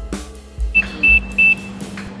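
The tail of background music, then three short, high electronic beeps of one pitch in quick succession, over a steady low hum.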